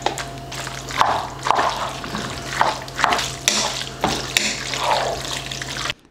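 A spoon stirring a wet, creamy noodle mixture in a cooking pot: repeated squelching, sloshing strokes about twice a second, with light clicks of the spoon against the pot. A steady low hum runs underneath.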